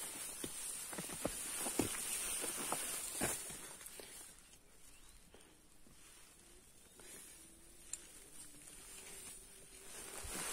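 Footsteps and light taps of a trekking pole on a narrow dirt trail through grass, for the first three or four seconds and then quieter, over a faint, steady, high-pitched hiss of mountain-forest ambience.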